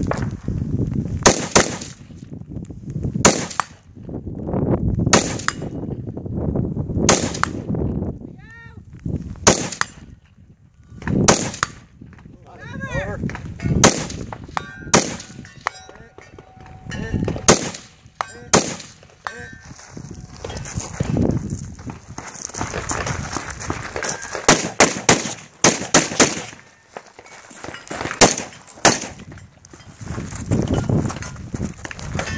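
Rifle shots fired from prone at distant targets, one every two seconds or so, each a sharp crack. In the last several seconds the shots come in quicker strings.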